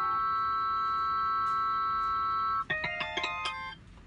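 Korg Pa1000 arranger keyboard playing a loaded guitar-harmonics soundfont sample: several ringing, chime-like notes held together, then a quick cluster of new notes played about two and a half seconds in that stops shortly after.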